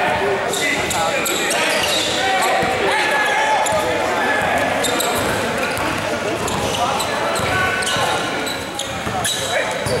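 Basketball game in an echoing gym: the ball bouncing on the court, sneakers squeaking, and players' voices calling out indistinctly.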